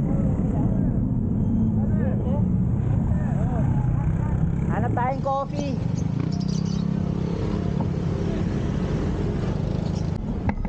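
Steady low rumble of passing road traffic and wind on the microphone. Brief indistinct voices come about two seconds in and again around five seconds, and the rumble thickens in the second half as vehicles pass close by.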